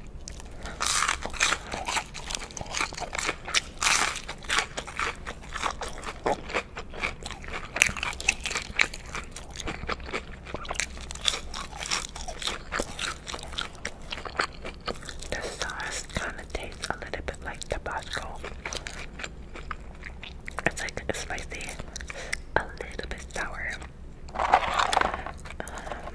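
Close-miked eating of crispy spicy chicken McNuggets: crunchy bites into the fried coating and wet chewing sounds, coming in irregular clusters.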